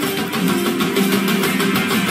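Music with guitar over a steady beat, held notes in the low-mid range.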